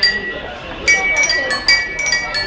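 Small ceramic bowls struck with chopsticks and played as a tune, each strike ringing with a clear bell-like pitch. One note opens, there is a short pause, and then a quick run of about six notes comes in the second second.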